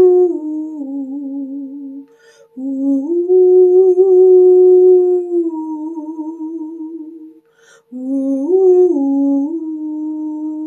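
A woman's wordless singing: a slow melody of long held notes stepping up and down, broken by two brief pauses for breath, about two seconds in and near eight seconds in. A faint steady tone sounds beneath the voice.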